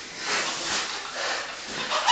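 Two grapplers breathing hard during a roll, with loud noisy exhalations that swell and fade about every half second.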